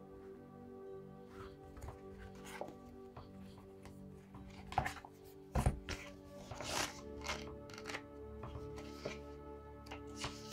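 Soft background music of steady held tones, with a scatter of knocks and rustles from a paperback oracle guidebook being picked up and opened, the loudest a thump about halfway through.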